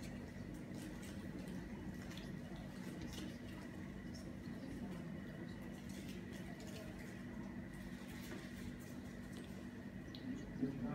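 Faint steady low hum of a large indoor space, with soft scattered ticks at irregular intervals.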